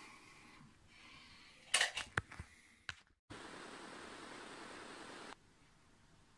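A quick cluster of sharp clicks and knocks about two seconds in: the camera being handled and set against the telescope eyepiece. After a brief dead gap comes a steady hiss for about two seconds that cuts off suddenly.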